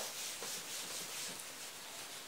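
Whiteboard eraser rubbing marker writing off a whiteboard: a steady scratchy hiss of wiping.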